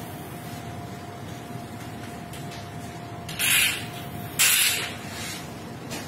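Two short hissing spritzes from a spray bottle of sanitizer or disinfectant, each about half a second long and about a second apart, over a faint steady hum.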